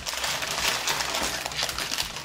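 Small plastic snack packet crinkling as it is torn open and handled: a dense, continuous run of crackles.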